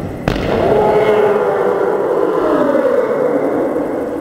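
A ball strikes hard about a third of a second in. A loud, continuous pitched sound follows, its pitch shifting and sliding downward, echoing in a large hall.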